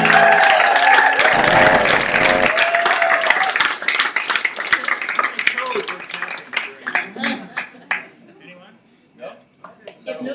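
Audience applauding with voices cheering and calling out, the clapping thinning out and dying away about eight seconds in.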